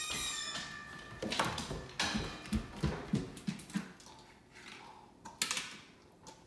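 A dog's short high whine, then a run of irregular soft thumps and clicks as the wolfdog's paws go down bare wooden stairs, with a couple more clicks about five and a half seconds in.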